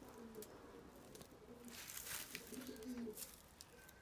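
Faint, repeated cooing of pigeons, with a brief rustle of straw about two seconds in.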